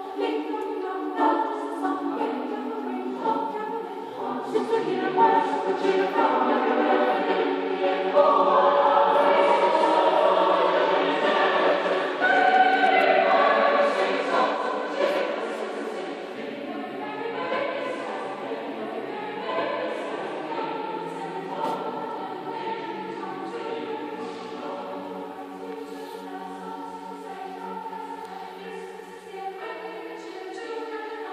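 A choir singing in a church, many voices in sustained notes; it swells loudest in the middle and softens toward the end.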